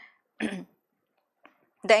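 A woman coughs once, a short throat-clearing cough about half a second in. Her speech resumes near the end.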